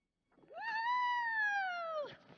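A cartoon character's high-pitched voice gives one long drawn-out vocal cry, rising at first and then slowly falling in pitch, starting about half a second in.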